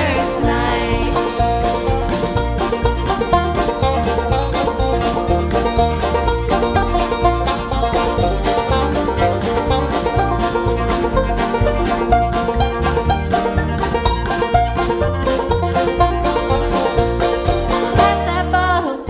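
Banjo taking an instrumental break over acoustic guitar, upright bass, fiddle and drums in a bluegrass-country band playing live, with a steady driving beat.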